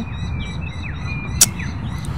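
Birds chirping, a few short high chirps over a low steady rumble of outdoor noise, with one sharp click about one and a half seconds in.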